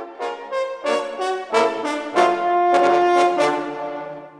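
Four French horns playing together in chords: a few short, quick chords followed by a long held chord that fades away near the end.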